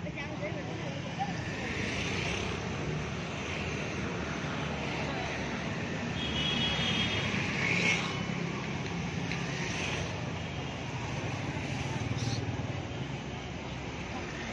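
Busy street ambience: a steady hum of motorcycle and car traffic with scattered voices of people nearby. A motorcycle passes close about eight seconds in, the loudest moment.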